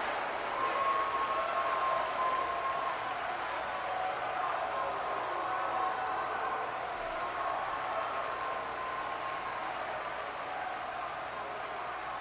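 A theatre audience's sustained applause on a film soundtrack, an even wash of clapping that eases slowly, with faint held tones underneath.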